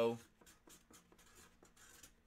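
Faint, quick, irregular clicks of a computer keyboard being typed on.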